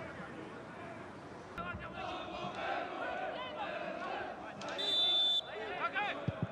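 Football stadium ambience: shouting voices from players and a sparse crowd rise after the first second or so. About five seconds in comes a short, loud referee's whistle blast.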